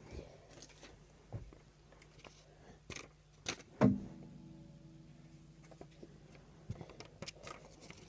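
Handling clicks and knocks as a guitar is got out and set down. The loudest is a sharp knock about four seconds in that leaves the guitar's strings ringing briefly.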